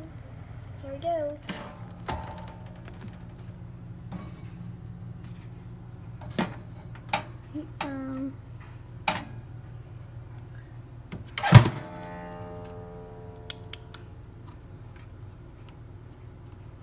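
A toaster oven being loaded: scattered clicks and knocks of its metal parts, then the door shut with a loud clang that rings on for a couple of seconds, over a steady low hum.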